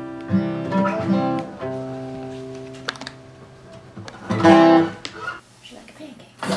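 Two acoustic guitars closing a song: a chord rings out and slowly fades, with a few last plucked notes about a second in. A short, loud voice cuts in about four and a half seconds in.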